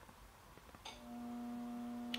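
A few faint clicks, then, about a second in, a steady hum starts: one low held tone with fainter overtones above it, unchanging in pitch.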